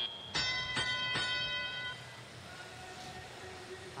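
FRC field match signal for the start of the teleoperated period: three bell-like dings about 0.4 s apart, ringing out and fading within about a second and a half. Faint arena background follows.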